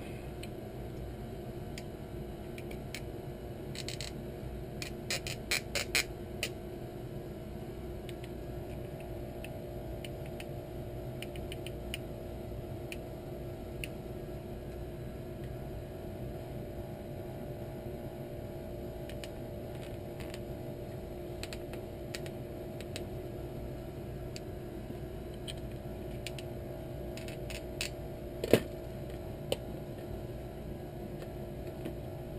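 Light clicks and taps of 3D-printed plastic parts and arm tubes being handled and pushed together during quadcopter frame assembly, with a cluster of clicks about four to six seconds in and a single sharper knock near the end, over a steady low hum.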